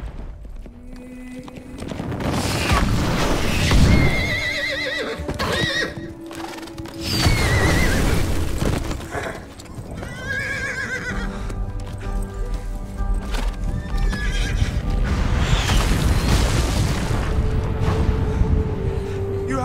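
A horse whinnying several times with galloping hooves, over dramatic film score music and the deep booming rumble of an erupting volcano.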